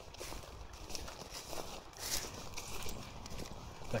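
Footsteps of a person walking at an even pace, crossing grass onto a dirt path, with light rustle from the handheld camera.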